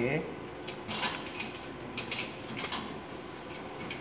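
Scattered light metallic clicks and knocks from hands pushing shut and handling the sheet-metal door of an electrical switchboard cabinet.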